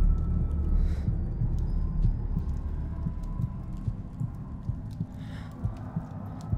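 Low, rumbling film sound-design drone with an irregular throbbing pulse in it, gradually getting quieter, with faint thin high tones drifting above it.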